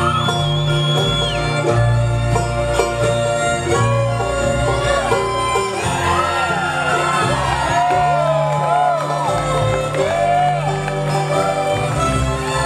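Bluegrass band with a string section of fiddles and cellos, banjo and acoustic guitars playing an instrumental break of a waltz, with sliding, wavering lead notes through the middle.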